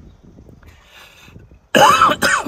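A man coughs hard once, suddenly and loudly, near the end after a mostly quiet stretch. He is choking on saliva that went down the wrong pipe.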